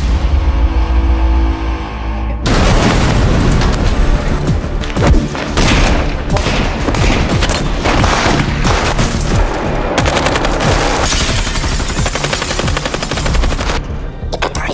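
Thriller-trailer sound: a deep low drone and boom, then from about two and a half seconds in, rapid automatic gunfire and impacts over dramatic music.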